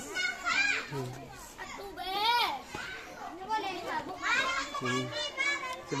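Many children's voices chattering and calling out over one another, high and overlapping, with a lower voice or two among them.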